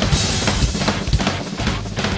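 Acoustic drum kit played fast in a progressive-metal groove: rapid bass drum and snare hits, with a cymbal crash right at the start that rings for about half a second.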